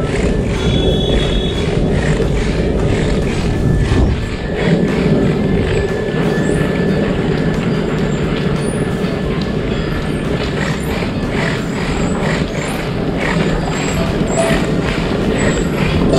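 Oxelo Carve 540 longboard wheels rolling steadily over rough asphalt, a continuous rumble broken by frequent small clicks from the road surface.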